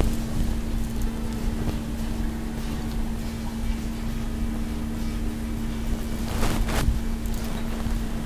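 A steady low hum with a rumble under it.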